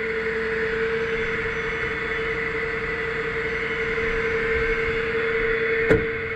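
Flatbed tow truck running steadily at idle: a constant hum with a higher whine above it. A single sharp click comes near the end.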